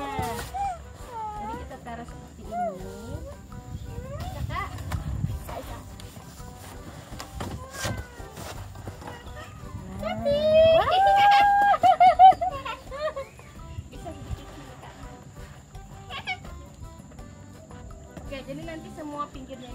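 Cardboard panels being handled, with a few light knocks, under bits of voice. About ten seconds in comes the loudest sound: a high call that rises and then wavers for a couple of seconds.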